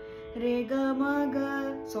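A woman sings a short phrase of held notes moving in small steps, starting about a third of a second in, over the steady two-note drone of a shruti box tuned to A.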